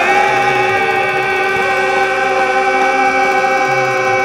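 Live band and male singers holding one long, steady note of the song together, without a break.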